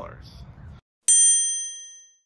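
A single bright bell ding, an edited-in sound effect, struck about a second in and ringing out as it fades over about a second.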